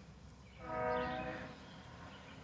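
A faint horn sounds once for about a second, a steady chord of several pitches that swells and fades, over a quiet outdoor background.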